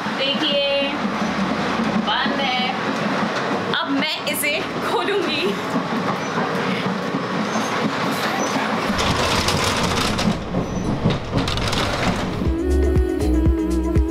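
Running noise of an Indian Railways express train heard from inside a coach vestibule, with voices talking in the background. Background music with a steady beat comes in near the end.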